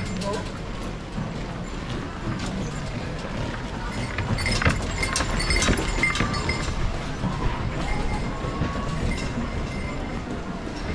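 Street bustle on a wet pedestrian street: indistinct voices of passers-by and footsteps, with a cluster of clicks and clinks about four to six seconds in.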